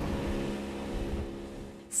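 Motor of a small open fishing boat running steadily at speed, a constant drone over a low rumble of wind and water, easing slightly near the end.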